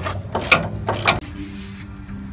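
A ratchet wrench clicks in two short bursts, tightening the nut on a replacement sway bar end link.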